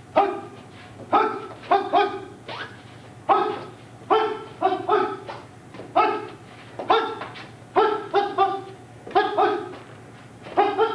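A dog barking over and over, in quick groups of one to three barks about once a second.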